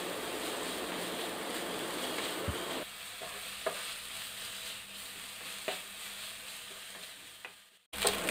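Chicken pieces sizzling as they fry in a non-stick pan while being stirred with a wooden spatula, with a few light taps of the spatula on the pan. The sizzle drops a little about three seconds in and cuts off suddenly just before the end.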